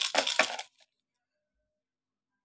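Pieces of broken glass bangle rattling and clinking inside a homemade mirror kaleidoscope as it is shaken, a quick run of sharp clinks that stops under a second in.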